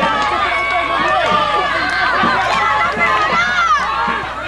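Many high-pitched voices shouting and calling over one another without a break: spectators and young players yelling during live youth football play.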